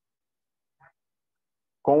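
Near silence, with the background cut off completely, broken by one faint, very short sound a little under a second in; a man's speaking voice starts near the end.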